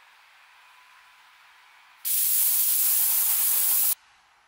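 A loud, steady hiss that starts suddenly about halfway through and cuts off abruptly just before the end, over faint background noise.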